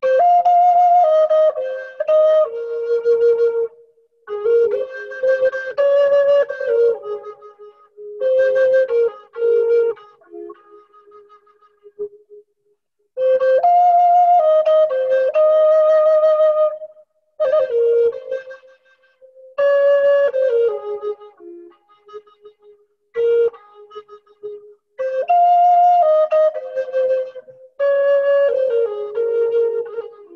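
Handmade wooden Native American flute playing a slow melody in phrases a few seconds long with short breaks between them. Each phrase mostly steps down from higher notes to a lower held one.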